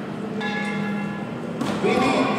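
A ringing, bell-like tone of several steady pitches at once, starting abruptly about half a second in and cutting off about a second later, over a steady low hum.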